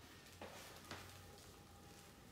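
Near silence: room tone with a faint low hum and two faint ticks.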